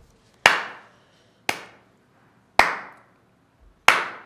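Slow hand claps, four single claps about a second apart, each with a short echo.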